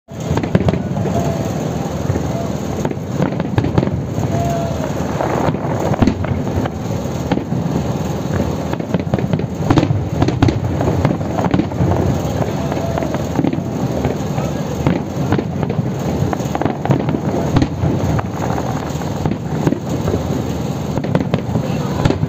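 Aerial fireworks display: a continuous barrage of bangs and crackling shell bursts, many per second, with no pause.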